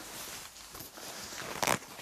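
Handling noise as a sheet-metal tractor seat pan is lifted and turned over on a workbench, with light rustling and one short knock near the end.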